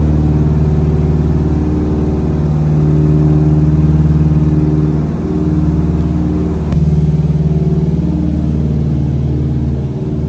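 Twin radial engines of a Beech 18 running steadily, a loud low drone heard from inside the aircraft, with a brief dip about five seconds in and a faint click just before seven seconds.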